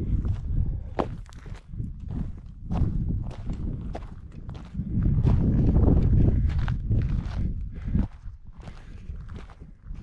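Footsteps on loose rock and scree at a steady walking pace, with wind rumbling on the microphone in gusts, strongest from about five to eight seconds in.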